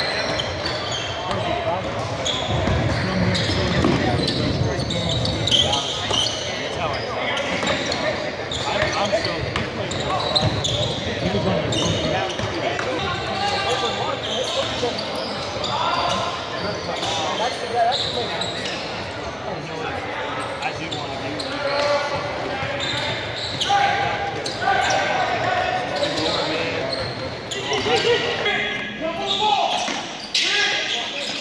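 Basketball game sounds in a gym: the ball bouncing on the hardwood floor amid players' and spectators' voices, all echoing in the large hall.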